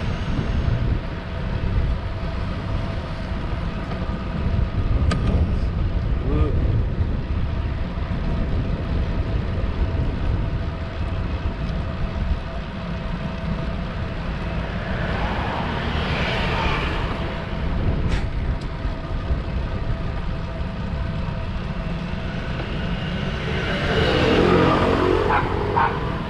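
Steady rumbling wind noise on a camera microphone carried on a moving road bicycle, with two louder passing sounds, one around the middle and one near the end.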